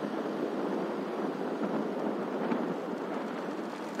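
Steady rushing noise from a moving vehicle: wind on the microphone with road and engine noise beneath.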